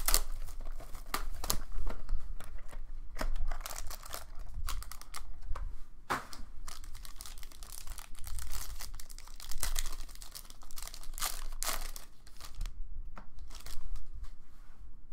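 Wrapping of a Panini Obsidian football card box and its pack being torn open by hand, with crinkling plastic and foil in quick, uneven bursts of tearing and crackling. The crackling dies down about a second before the end.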